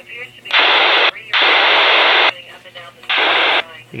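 Motorola HT1250 handheld radio's speaker hissing with open-squelch static in three bursts as the squelch button is pressed and let go: about half a second, then about a second, then half a second again, each starting and stopping abruptly.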